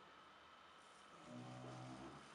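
Near silence, then a person's low, steady closed-mouth hum ("mmm") starting just over a second in and lasting under a second.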